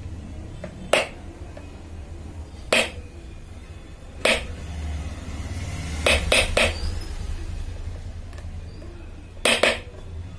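Sharp clicks and taps of a soldering iron against a circuit board and workbench, about seven in all, three in quick succession a little past halfway and a pair near the end, over a low steady hum.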